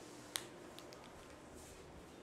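A single sharp click about a third of a second in, followed by a couple of faint ticks over quiet room tone.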